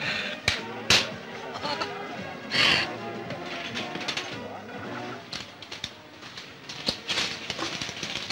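Film soundtrack: background music with faint voices, and two sharp knocks in the first second.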